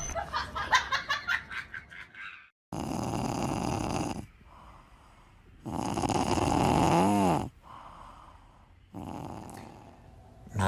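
A sleeping cat snoring: three long snores a few seconds apart, the last one quieter.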